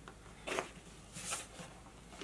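Faint handling noise from the plastic defibrillator casing, with two short scrapes: one about half a second in and a higher, hissier one a little past a second.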